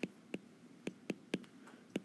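A stylus tapping and clicking on an iPad's glass screen while writing, about half a dozen short, sharp taps.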